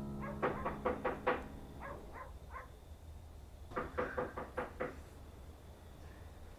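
Knuckles rapping on a wooden door in two rounds of quick knocks about three seconds apart, as the last strummed acoustic guitar chord dies away at the start.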